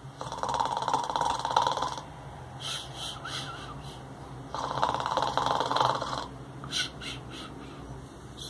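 A man imitating snoring: two long, fluttering snores of about two seconds each, about four seconds apart, with short, softer breaths between them.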